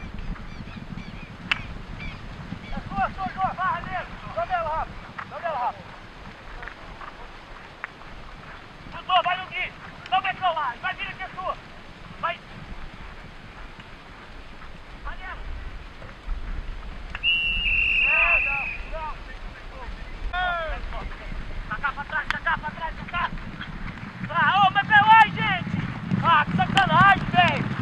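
Polo players shouting short calls to one another across the field, heard from a distance in bursts, with a few sharp knocks. A high whistle sounds once for about a second and a half about two-thirds of the way through.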